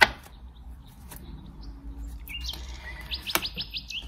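A sharp click of cards being handled at the start, then in the second half a series of high bird-like chirps, ending in a quick run of about ten short chirps a second.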